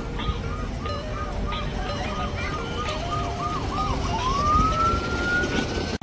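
Electronic siren-like tone: a quick warble repeating about three times a second, then, about four seconds in, one long rising whoop.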